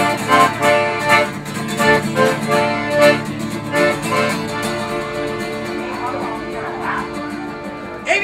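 Accordion and acoustic guitar playing together, with sustained accordion chords over a strummed guitar beat. The playing is louder in the first half and softer from about four seconds in.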